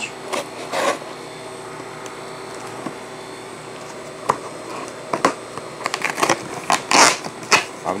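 Cardboard egg case being handled and opened: a hand rubs across the cardboard, there are a few sharp clicks near the middle, and then a burst of scraping and tearing of cardboard near the end.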